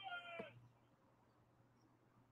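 Near silence, broken only by a faint, drawn-out high-pitched call from a distant voice that glides slightly down and stops about half a second in.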